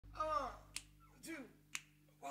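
Two crisp finger snaps about a second apart, each just after a short voiced syllable that falls in pitch, in a steady beat. A faint steady hum lies underneath.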